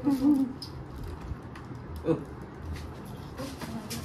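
A person's short, low hum-like voice sound at the start, then quieter table sounds of people eating by hand: faint scattered clicks and rustles.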